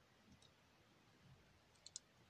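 Near silence, with faint clicks from small plastic LEGO bricks being handled: a faint one about half a second in and a quick pair just before the end.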